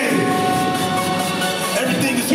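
Hip-hop backing track playing over the PA at a live rap show: a held chord of several steady tones that stops just before the end, with no rapping over it.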